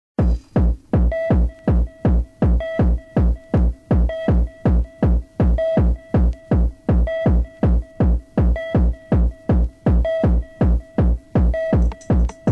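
Electronic dance music from a DJ set: a fast, steady drum-machine kick on every beat, at about 160 beats a minute, with a short pitched stab every fourth beat.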